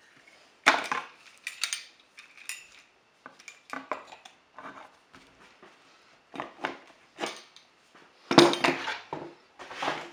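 A steel bar with a welded handle clanking and scraping against the edge of an aluminum composite panel as it is worked along the panel's folded flange. It makes an irregular series of knocks, the loudest about eight and a half seconds in.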